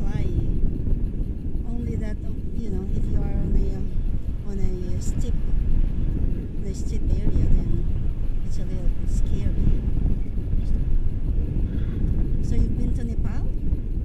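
Wind buffeting the camera microphone during a tandem paraglider flight: a loud, steady low rumble of airflow, with faint muffled voices under it.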